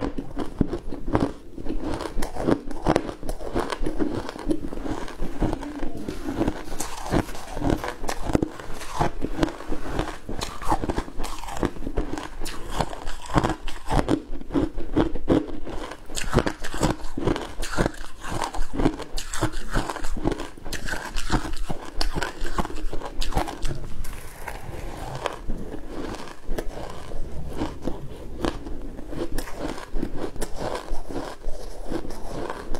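Close-miked chewing of pink shaved ice, a dense run of rapid, crisp crunches with no pause.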